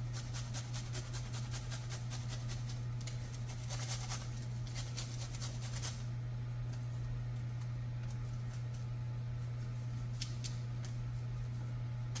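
Garlic cloves being grated on a flat metal hand grater: rapid, regular rasping strokes for about six seconds, then a few scattered light scrapes and taps. A steady low hum runs underneath.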